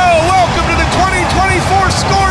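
Excited goal call by a sports broadcaster: a man shouting in quick, short, high-pitched cries, about four a second, just after a long held shout. A noisy stadium crowd cheers underneath.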